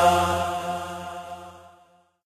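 A group of men chanting a noha, a Shia lament, together, holding a last note that fades away to nothing.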